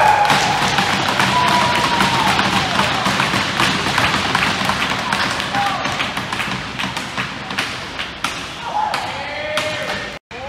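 Hockey spectators clapping and cheering, with shouts at the start and rapid handclaps that slowly die away into scattered applause; a few more shouts come near the end.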